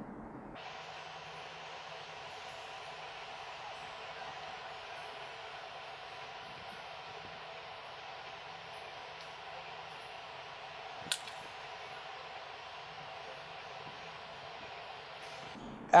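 Steady faint hiss of room tone, with a single short click about eleven seconds in.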